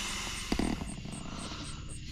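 A person blowing one long, steady breath by mouth into the valve of a Therm-a-Rest Trail Pro self-inflating foam sleeping pad to top up its inflation. The breath breaks off right at the end for an inhale.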